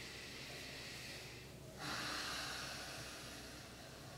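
A person breathing deeply through the nose: one slow breath in, then a louder breath out starting about two seconds in and fading away.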